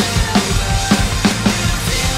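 Pearl Masters Maple Reserve drum kit with Sabian cymbals played in a driving rock beat, kick, snare and cymbal hits, along with a recorded backing track of guitars and synths.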